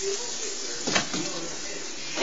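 Floured chicken breast sizzling in hot butter in a frying pan, a steady hiss, with a single knock about a second in.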